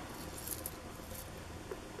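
Faint rustling and light clinking as small hanging ornaments are handled among Christmas tree branches, a few soft crackles about half a second in.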